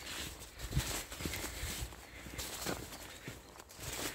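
Footsteps along a narrow earth path through a bean field, with legs brushing and rustling through the dew-wet bean plants on either side.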